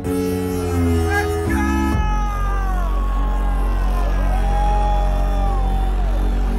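Electronic dance music played loud over a festival stage sound system. A deep sustained bass runs under high sliding melodic lines that bend downward, and the music changes abruptly about two seconds in.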